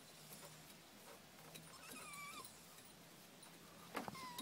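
A dog whining faintly, with a thin high whine about halfway through, over near silence.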